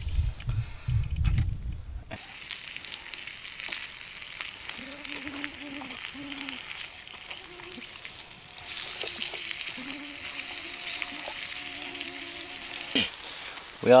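Sausage-bacon and eggs frying in a small pan on campfire embers: a steady sizzling hiss that starts suddenly about two seconds in, with light clicks from a spatula stirring in the pan. Before it, a low rumble.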